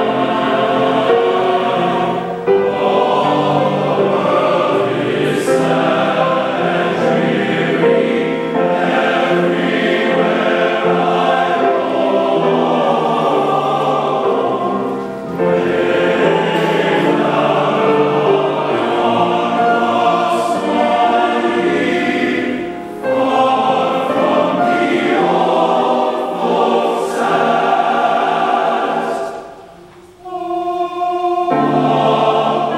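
Large men's glee club choir singing a medley of college fight songs in full harmony, pausing briefly between phrases.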